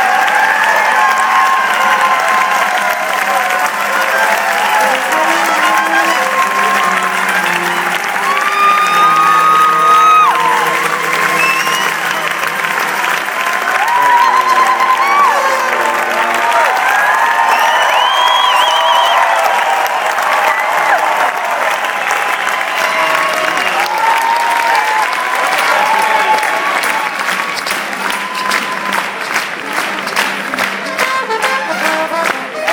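Concert audience applauding and cheering, while brass and other instruments on stage play held notes and short phrases over the clapping. Near the end the clapping falls into a regular beat.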